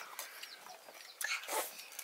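Faint, short, high animal chirps or whimpers, with a few light clicks about a second and a half in.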